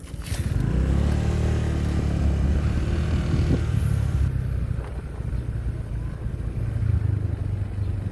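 Motorcycle engine picking up about half a second in, then running steadily with small rises and falls as the bike is ridden.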